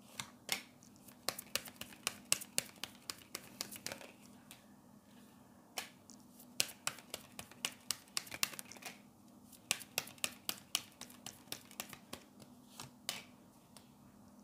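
A deck of oracle cards being shuffled and handled, with cards dealt onto a table: a long series of sharp card snaps and flicks, often several a second, with brief pauses between runs.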